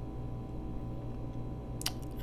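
Steady low electrical hum in the background, with one sharp click near the end.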